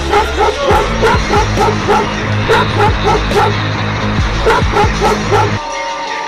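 A dog barking rapidly and repeatedly, about three barks a second with a short pause midway, over background music that cuts off near the end.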